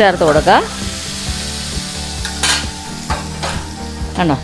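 Hot ghee with fried cashews and raisins sizzling as it is tipped into a steel bowl of payasam and stirred in, with a spoon scraping the pan and bowl. A short gliding tone sounds in the first second, and there is one sharp click about halfway.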